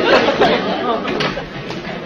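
Indistinct voices talking, chatter that fades over the two seconds.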